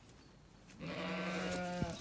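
A Zwartbles sheep bleats once: a single steady-pitched bleat lasting about a second, starting a little under halfway in.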